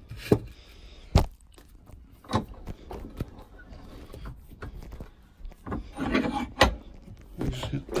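A piece of timber set into a cast-iron bench vice and clamped by turning the vice handle: a few sharp wood-and-metal knocks, the loudest about a second in.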